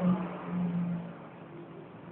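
Custom Kawasaki KZ1000's air-cooled inline-four running through a four-into-one exhaust, revved in two short surges in the first second, then dropping back to a quieter idle.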